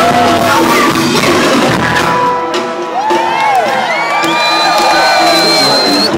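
A live rock band playing in an amphitheatre. About two seconds in, the low end of the music thins out, and audience members whoop and shout close to the microphone. Near the end someone holds one long, high whistle.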